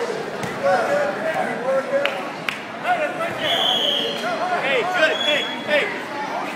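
Spectators talking and calling out around a wrestling mat, with a few sharp thumps in the first half and a brief high steady tone a little past halfway, then again shortly near the end.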